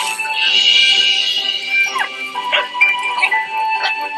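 Film soundtrack music playing steadily, with a few short vocal sounds from a cartoon puppy over it, one of them gliding down in pitch about halfway through.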